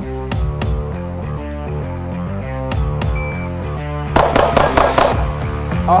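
Rock background music with a steady beat and guitar. About four seconds in, a handgun fires a rapid string of about five shots within roughly a second, heard over the music.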